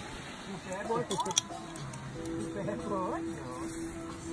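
Faint background voices over music, with a steady held note starting about halfway through. A few light clicks come just after a second in.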